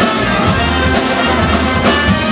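Live band with a brass section of trumpet, trombone and saxophone playing held chords over electric bass and a drum kit.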